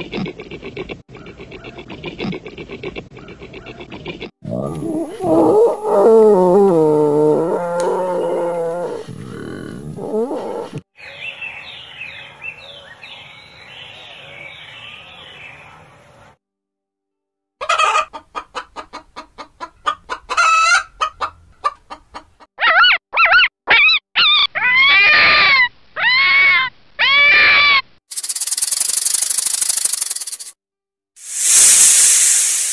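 A string of different animals' calls, one cut after another: repeated pitched calls, then loud low calls, higher calls, quick clicky pulses and a run of calls that rise and fall in pitch, ending in a steady hiss.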